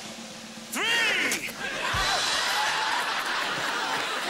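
Studio audience screaming and laughing, the crowd noise swelling about two seconds in just after a single low thud.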